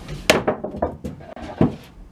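A clatter of sharp knocks and thuds, with a loud one near the start and another about a second and a half in.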